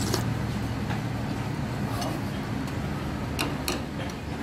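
A metal spoon clicking lightly against a ceramic soup bowl several times, two clicks close together near the end, over a steady low background rumble.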